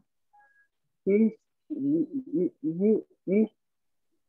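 A woman's voice slowly reading Sanskrit aloud, one syllable at a time, in six short syllables with small gaps between them after a silent first second.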